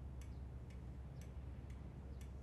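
Faint, steady ticking, about two ticks a second, over a low room hum.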